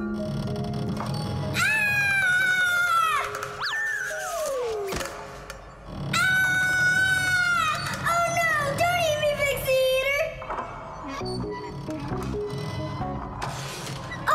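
Cartoon soundtrack of background music with two long, high-pitched wavering wails, about two seconds in and again from about six to ten seconds, and a falling glide between them.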